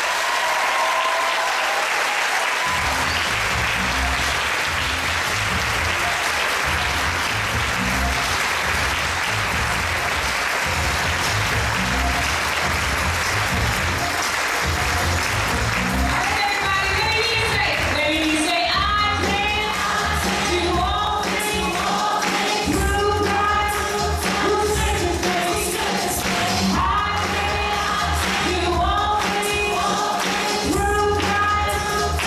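Congregation applauding as a live gospel band starts up, with bass and drums coming in a couple of seconds in. The applause dies away about halfway through, and singing over the band takes over.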